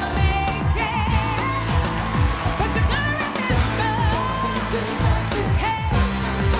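Live band playing an up-tempo song with a singer and a steady beat, the accompaniment to a ballroom quickstep.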